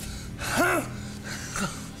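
A man gasping in pain: a short cry that rises and falls in pitch about half a second in, and a briefer one near the end.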